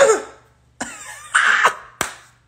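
A man laughing in short, cough-like bursts: one right at the start that fades within half a second, then after a brief pause two breathy bursts about a second in, the second louder.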